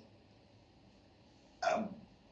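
Quiet room tone, then about one and a half seconds in a short vocal sound from the man at the pulpit.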